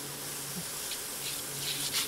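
Elk smash burger patties sizzling on a hot cast-iron griddle: a steady hiss, with a faint low hum underneath.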